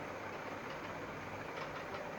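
Steady low background noise: room tone with a faint even hiss and hum, no distinct events.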